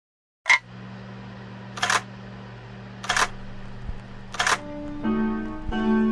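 Four camera shutter clicks, evenly spaced about 1.3 seconds apart, over a low steady hum; music with held tones comes in near the end.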